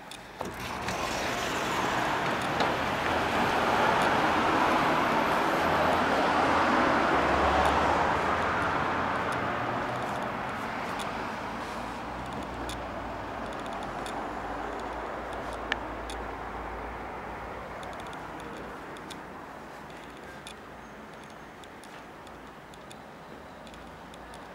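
Road traffic noise from the street below coming in through an open balcony door: it swells in about half a second in, is loudest over the next several seconds, then slowly fades away. A few light clicks sound over it.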